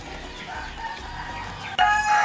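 Gamefowl roosters and hens in the background, faint at first, with a rooster's crow starting loudly near the end.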